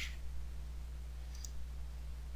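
A single faint computer mouse click about one and a half seconds in, over a steady low hum.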